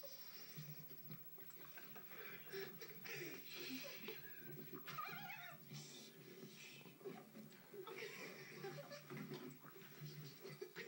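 Stifled, squeaky laughter and squeals from several men trying to keep quiet, with one wavering squeal about five seconds in, heard through a television speaker.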